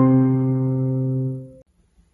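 A held low octave on a digital piano sustains evenly after a fast octave passage, then cuts off abruptly about one and a half seconds in, leaving silence.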